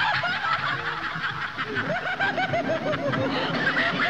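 A passage of a 1993 techno track: quick runs of short rising-and-falling chirps, about eight a second, one run fading just after the start and another about two seconds in.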